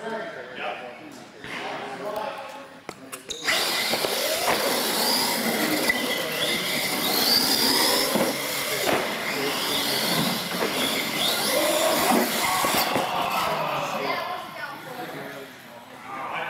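Radio-controlled monster trucks racing on a concrete floor, their electric motors whining and rising and falling in pitch with the throttle. The run starts suddenly about three and a half seconds in and dies away around thirteen seconds, with people talking in the hall before and after.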